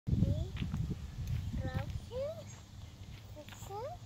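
A toddler's short rising vocal sounds, four or so little upward-sliding coos or 'ooh' calls. In the first two seconds a loud low rumbling noise sits underneath.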